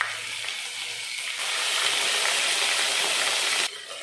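Fennel seeds, curry leaves and a spoonful of ginger paste sizzling in hot oil in a nonstick pan. The steady hiss grows louder about a second and a half in and cuts off suddenly just before the end.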